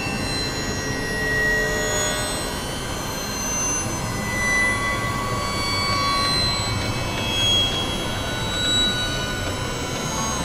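Dense droning experimental noise music, several tracks layered at once: a steady, engine-like wash of noise with thin sustained tones coming and going over it.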